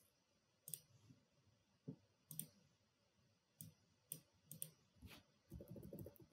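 Faint, irregular clicks of a computer mouse, about eight of them, followed near the end by a quicker run of soft keyboard key presses.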